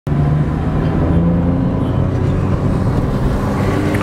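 Car driving, heard from inside the cabin: a steady low drone of engine and road noise.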